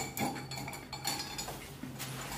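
Pen-refill centrifuge spinning its two metal cups of freshly ink-filled refills on a small electric motor, to drive the air bubbles out of the ink so the pens will write. A low steady motor hum runs under a sharp metallic clink at the very start and a few lighter clinks after it. By the end the cups are caught and stopped by hand.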